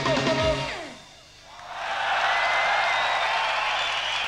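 A live rock band's electric guitar, bass and drums play the last notes of a song and stop about a second in. Then a large crowd cheers and applauds.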